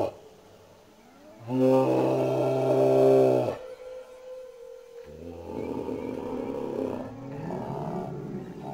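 A person's deep, drawn-out roaring groan lasting about two seconds, its pitch sagging as it cuts off. A single steady held tone follows, then a quieter mixed sound.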